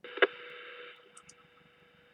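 Amateur radio receiver's squelch opening as a transmission comes in on the repeater: a sharp click and a rush of hiss that dies down after about a second, leaving a steady hum on the open carrier.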